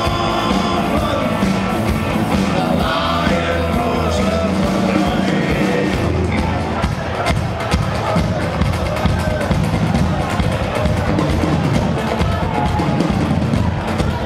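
Live rock band playing on stage, with strummed acoustic guitar, electric guitars and bass through the hall's PA, loud and steady.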